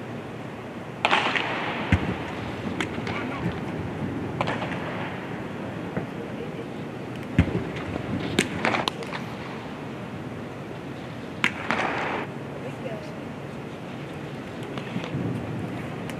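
Baseball stadium ambience with crowd chatter, broken by several sharp pops of pitched baseballs hitting the catcher's mitt; the clearest comes about eleven seconds in, followed by a short burst of crowd noise.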